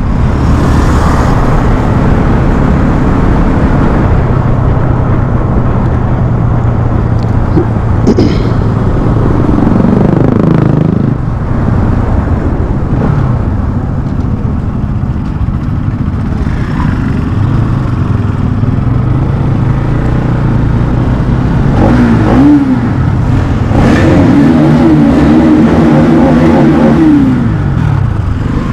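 Bajaj motorcycle engine running under way as it is ridden. The revs dip and climb again about ten seconds in and again a little past twenty seconds, then hold higher for a few seconds before falling away near the end.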